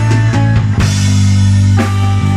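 Live rock band playing an instrumental passage: electric guitar, electric bass and drum kit, with held bass notes and sharp drum hits breaking in several times.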